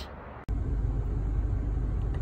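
Steady low engine rumble heard from inside a ute's cab, starting abruptly about half a second in.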